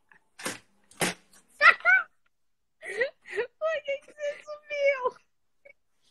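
A woman laughing hard and high-pitched, in bursts: a squealing peak about a second and a half in, then a run of quick, short laugh pulses over the next two seconds.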